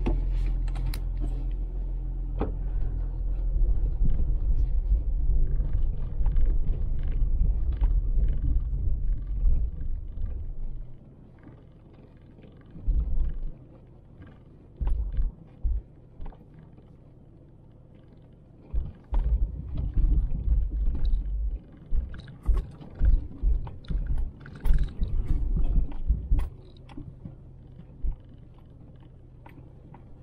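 Low rumble of a vehicle heard from inside the cab, steady for about the first ten seconds, then dropping away to a quieter background broken by repeated short low thumps as it rolls along a rough dirt road.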